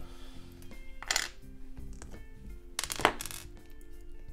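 Plastic LEGO bricks clicking and being pulled apart by hand, two short sharp clicks about a second in and about three seconds in, the second the louder, over steady background music.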